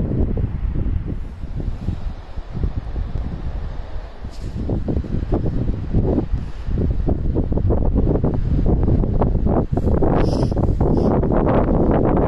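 Wind blowing across the microphone: a low rushing rumble that eases a little a few seconds in and then builds again.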